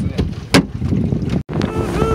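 Wind rumbling on the microphone and water noise aboard a small open motorboat running across choppy sea, with a sharp knock about half a second in and a brief dropout at a cut around the middle.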